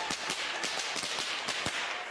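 A rapid, irregular series of sharp cracks and pops over a hissy background.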